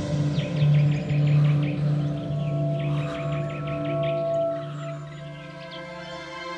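Ambient drama score of low, droning held tones that swell and fade, like a singing bowl, with bird chirping over it. Near the end a fuller chord comes in.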